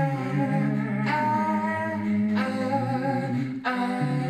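A cappella vocal music: a man singing long held notes into a microphone over layered, looped vocal parts, the chord changing about every second and a quarter.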